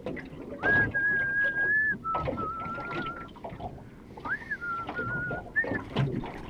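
A person whistling a slow tune: a high note held for about a second, then lower notes with a slight wobble, and a second phrase of a rising note and a held lower note about four seconds in.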